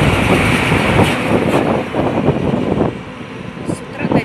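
Heavy Shacman dump truck passing close by, its diesel engine and tyres loud, then fading as it pulls away about three seconds in.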